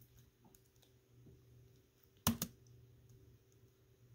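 A quick cluster of two or three sharp clicks, like a key or button being pressed, a little over two seconds in, over a faint steady low hum.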